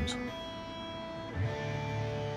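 PRS SE Custom 24 electric guitar being tuned: a single plucked note rings steadily, then about a second and a half in a fuller chord with low strings is struck and rings on.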